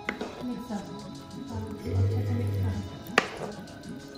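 Background music with a spatula knocking against a cooking pan as kofta in thick gravy is stirred: a small click at the start and one sharp knock about three seconds in.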